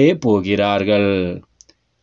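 A man's voice reading aloud, stopping about one and a half seconds in, followed by a faint click and then dead silence.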